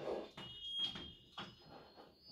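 Chalk writing on a blackboard: a few faint scratchy strokes, with a thin high squeak in the first second.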